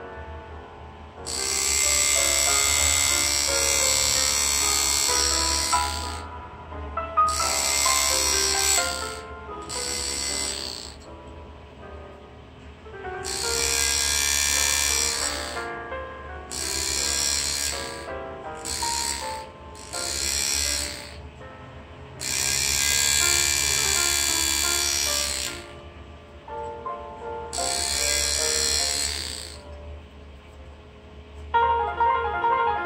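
Powered engraving handpiece driving a flat graver into a metal plate to cut away the background. It runs in about seven bursts of one to four seconds with short pauses between, its speed turned down for fine detail work. Soft jazz with piano plays underneath throughout.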